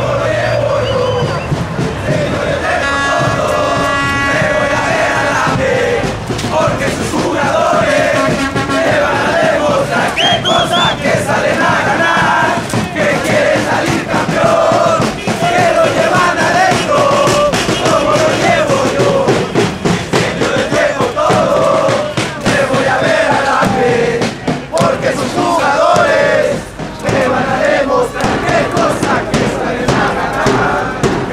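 A large crowd of football supporters chanting and singing together as they march, loud and continuous.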